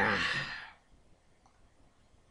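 A man's breathy sigh trailing off the end of a spoken "yeah", fading out within the first second.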